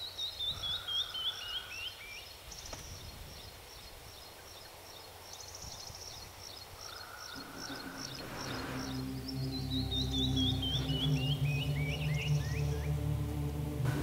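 Birds singing, one repeating a quick run of chirps that fall steadily in pitch, heard twice. From about seven seconds in, a low drone of held music tones comes in and grows louder.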